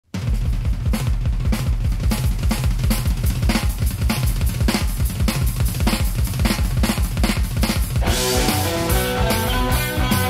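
Rock drum kit playing a solo intro: a fast, steady beat on kick drum, snare and cymbals. About eight seconds in, the rest of the band comes in with guitar.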